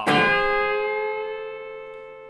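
Electric guitar (Fender Stratocaster) double stop struck once and left to ring, fading slowly. The B string is held bent at the eighth fret against the high E fretted at the eighth fret, a country-style double-stop bend.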